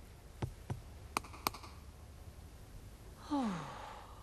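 A few sharp clicks in the first second and a half, then about three seconds in a cartoon character's short sigh-like 'oh' that falls in pitch.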